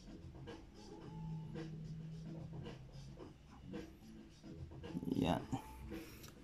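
Quiet handling of a paper room-directory folder: light rustles and small clicks of pages and cover being moved.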